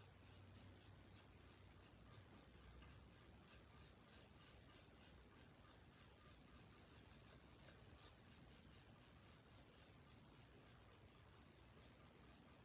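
Faint, quick scratching of a paintbrush with little paint on it, worked back and forth over a ceramic turkey figure, about four strokes a second.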